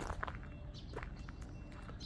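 Footsteps on gravel, a scatter of short irregular crunches, over a low rumble.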